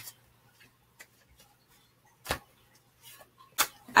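Tarot cards being handled: a few faint ticks, then a sharp click about two seconds in and another shortly before the end.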